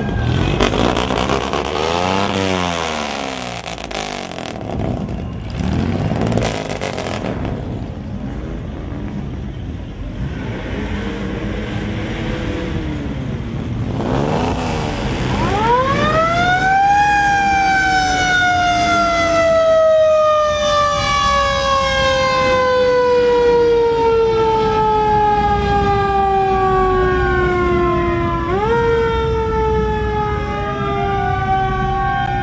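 A mechanical siren winds up about halfway through and then slowly winds down in pitch for several seconds. Near the end it gets a second short wind-up and falls again. Before it there is a mix of vehicle noise.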